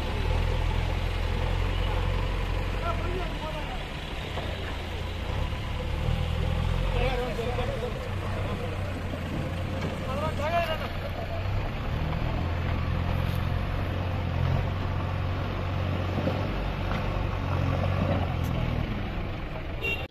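JCB backhoe loader's diesel engine running as the machine pushes and spreads gravel, the engine note swelling and easing several times as it works. People talk in the background.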